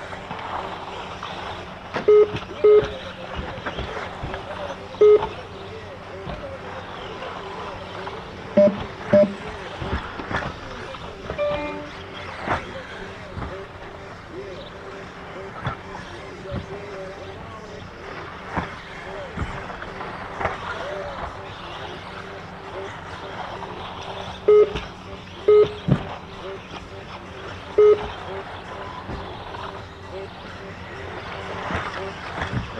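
RC off-road buggies running laps on a turf track, with short electronic beeps from the lap-timing system, singly and in pairs, as cars cross the timing line; the beeps are the loudest sounds.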